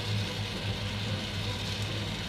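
Diced mixed vegetables cooking in oil in a frying pan: a steady sizzling hiss over a low, steady hum.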